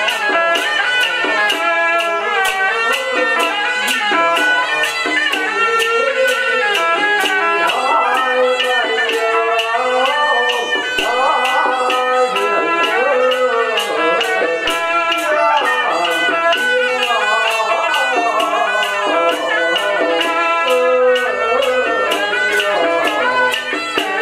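Taoist ritual music: a wind-instrument melody with gliding pitches over an even percussion beat of about two strokes a second.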